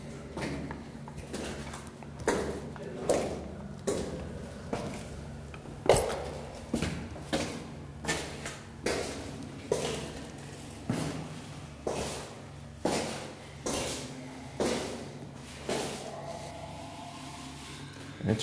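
Footsteps on a concrete floor, about one step a second, echoing in a concrete bunker corridor.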